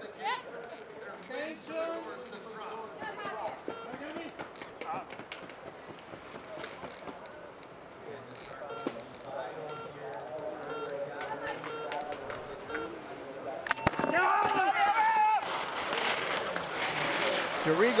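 Voices of spectators and team members chatter and call out around a ski-race start. About fourteen seconds in there is a sharp click and loud shouts of encouragement as the two racers leave the start gates. Then a steady hiss of skis scraping on snow.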